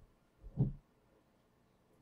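A single short, dull thump about half a second in, in an otherwise quiet room.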